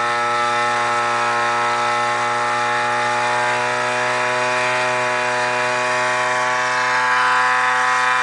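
Homemade pulse motor running on a five-winding toroidal coil, its magnet rotor spinning at speed: a steady, loud whine with many overtones whose pitch sinks slightly. It is drawing about 7 watts with several windings in series, with a charger as its load.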